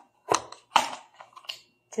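Handling noise of a small cardboard test-kit box as it is picked up and lifted: three short sharp scrapes or knocks with a few fainter taps between.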